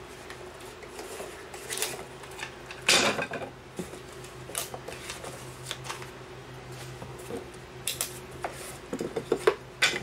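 Wooden beehive frame parts clattering and knocking as they are handled and unpacked from a cardboard box: scattered clicks, a louder knock about three seconds in and a quick run of clicks near the end, over a faint low steady hum.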